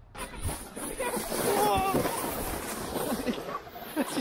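Plastic sled sliding fast down a snowy slope: a steady loud hiss of the sled on the snow, mixed with wind rushing past. A voice calls out briefly around the middle.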